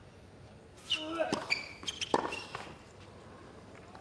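A tennis ball struck by rackets during a rally on a hard court: the serve and a return, sharp hits about a second apart, with shoe squeaks on the court between them.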